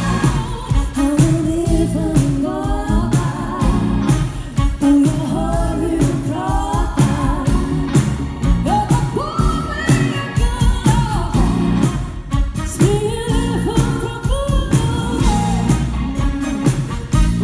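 Live soul-funk band playing, with a woman singing the lead vocal over drums and bass.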